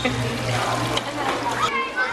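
Water splashing and trickling in a soapy children's water play table, with children's voices around it.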